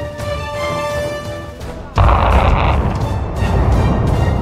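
Music, then about two seconds in a sudden loud explosion boom from the demolition charges bringing down a power station's cooling tower. A heavy low rumble follows and carries on.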